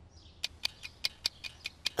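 A string of short, light ticks, about five a second, starting about half a second in: a dubbed cartoon's ticking sound effect.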